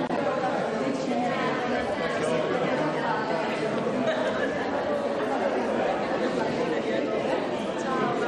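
Crowd chatter: many people talking at once in overlapping conversations, steady throughout.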